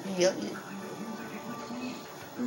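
A woman says a short "yep", then faint background sound like a television, with low voice-like tones, runs underneath.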